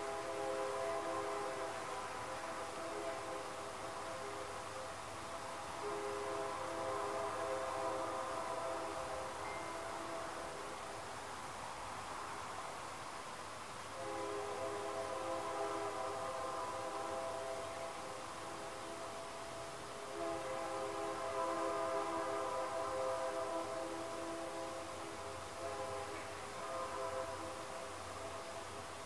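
Train horn sounding in long held blasts, several notes at once, fading briefly about halfway through, with a faint low rumble from the train beneath.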